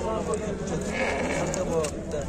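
One bleat from the penned sheep and goats, a single pitched call held for most of a second about halfway through, over faint background voices.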